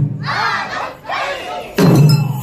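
Taiko drummers' shouted calls (kakegoe): two drawn-out shouts between drum strokes, with one stroke dying away at the start and the drumming starting again near the end.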